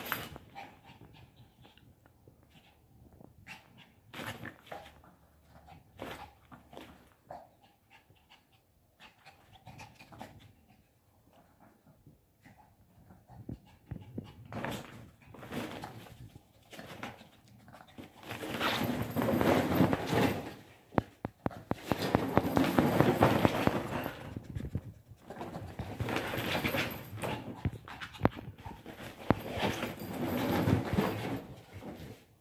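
A Shih Tzu puppy playing in a pop-up mesh tent: light scratches and rustles at first, then, from a little past the halfway point, long stretches of loud fabric rustling and scraping as the puppy scrabbles at the tent and pushes it across the rug.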